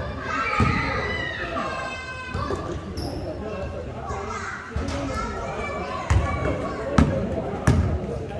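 Basketball bouncing on an indoor gym floor, echoing in a large hall: one thud about half a second in and three more in the last two seconds. Players' voices call out in the first few seconds.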